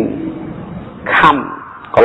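A man's voice preaching a Buddhist sermon in Khmer: a short burst of words, then about a second in one syllable drawn out long and held.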